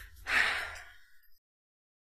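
A woman's audible breath: one sigh-like rush of air lasting about half a second, after which the sound cuts off completely.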